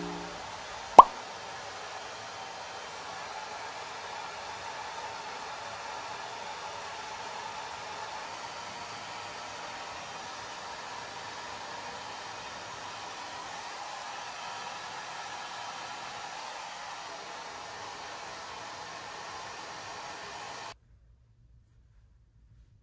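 Handheld hair dryer running steadily, an even rush of air that stops suddenly near the end. About a second in, one short rising pop stands out, louder than the dryer.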